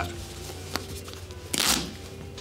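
Shell fabric of a Karbon synthetic-insulated puffer jacket pulled apart by hand at a small cut: a faint tick about three-quarters of a second in, then one short rip about a second and a half in. The shell tears open easily, which the wearer calls "not that tough".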